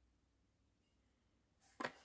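Near silence, then near the end a short crackle of a Hot Wheels plastic blister pack and its cardboard card being handled and turned over.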